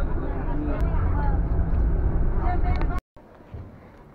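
Steady low rumble of a moving bus's engine and road noise heard inside the passenger cabin. It cuts off abruptly about three seconds in, leaving much quieter open-air sound.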